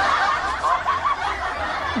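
A man's stifled laughter, snickering breathily behind a hand held over his mouth, running on until talk resumes at the end.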